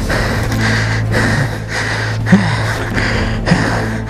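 A man breathing hard and gasping with effort while heaving a stuck dirt bike out of a deep rut, with two sharper grunts, one a little past halfway and one near the end, over a steady low hum.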